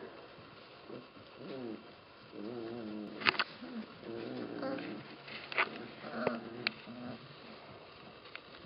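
A litter of puppies whining as they play, several short wavering whines one after another, with a few sharp clicks or knocks among them.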